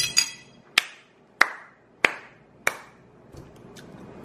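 A series of six sharp taps, spaced roughly half a second apart and stopping about two-thirds of the way through. The first tap has a brief ringing tone.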